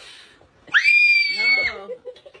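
A toddler squealing instead of blowing: one high, steady squeal about a second long, with an adult's voice coming in under its end.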